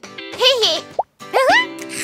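Wordless cartoon voice sounds: a falling "oh"-like call, then a short rising one, over light children's background music. A brief plop-like sound effect comes between them, about a second in.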